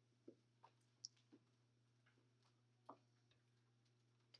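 Near silence: room tone with a low steady hum and a few faint, scattered clicks and taps.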